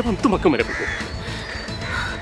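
A crow cawing over background music, just after the last spoken word of a line.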